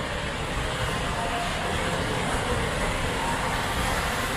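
Steady, even rushing background noise of a large indoor store, from the ventilation and the trickle of an indoor trout pond's water feature.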